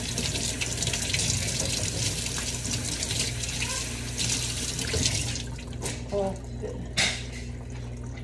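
Kitchen tap running into a sink, shutting off about five seconds in; a sharp knock follows near the end.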